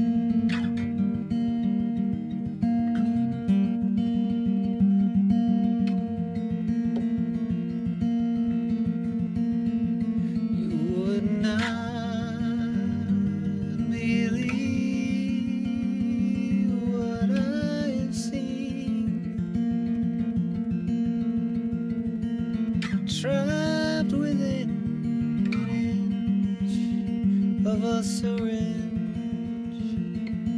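Acoustic guitar played steadily, with a wordless hummed vocal melody coming in over it in several short phrases from about ten seconds in.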